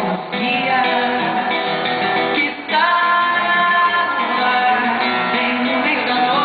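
A woman singing a samba with acoustic guitar accompaniment. The voice breaks off briefly about two and a half seconds in, then holds a long note.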